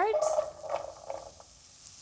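Cubed butternut squash dropped into a frying pan of hot melted butter, sizzling as the pieces land; the sizzle is loudest at first and fades away after about a second and a half.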